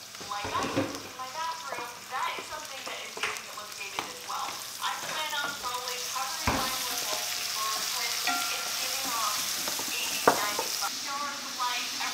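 Sliced onions and tomato frying in a pan, the sizzle growing fuller a few seconds in, while a wooden spoon stirs and scrapes and knocks against the pan now and then.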